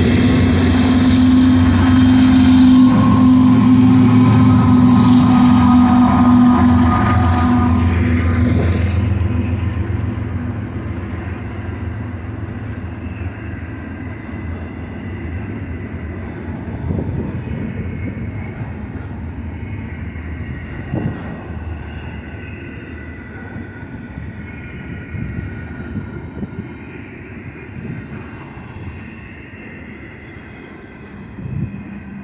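Trailing GE diesel-electric freight locomotives pass close by with their engines running loud for the first eight seconds or so, then fade away. Double-stack intermodal well cars follow, rolling past with a steadier, quieter wheel rumble and a few clunks.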